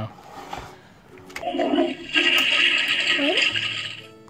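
Toilet Trouble toy toilet playing its electronic flushing sound through its small speaker: a hissing, gurgling flush lasting about two and a half seconds, starting about a second and a half in, with a short rising whoop near the end.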